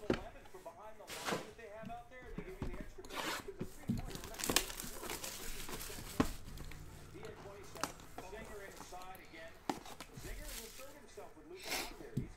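Cardboard trading-card boxes being handled and set down on a table: a handful of sharp taps and knocks among light rustling.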